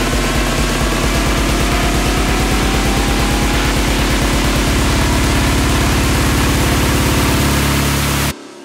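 Big room techno build-up: a bass-drum roll that speeds up until it blurs into a continuous low drone about halfway through, under a rising white-noise sweep.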